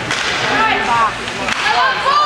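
Voices of spectators at an ice rink calling out in short rising-and-falling shouts, with a sharp crack typical of a hockey stick striking the puck.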